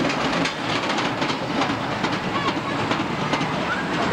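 Ride cars running on rails, a steady rapid clatter of wheels over track joints.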